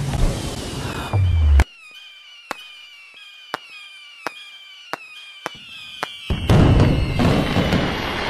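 A fireworks display. After a loud dense burst, a quieter stretch follows of sharp pops, each trailed by a short falling whistle, about one every 0.7 s. About six seconds in, a dense barrage of bangs and crackle starts.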